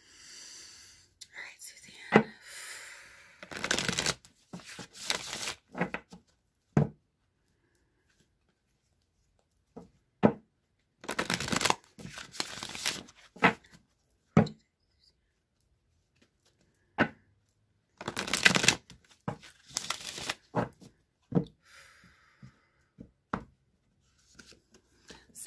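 A deck of oracle cards being shuffled by hand in three bouts, with scattered short taps of cards between the shuffles.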